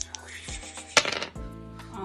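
A pair of dice thrown onto a wooden game board, landing with one sharp clatter about a second in.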